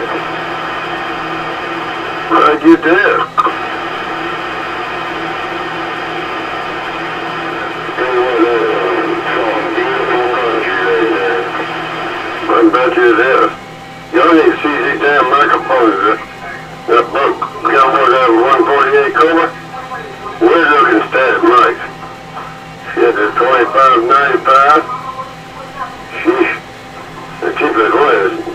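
Kraco CB radio set to channel 12, receiving: a steady static hiss fills the first several seconds, broken once by a brief snatch of voice. About eight seconds in, tinny, garbled voices of other operators start coming through the radio's speaker, breaking in and out.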